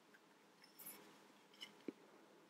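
Faint clicks and rustling of plastic toy crane parts being handled and fitted together, with a slightly louder knock near the end.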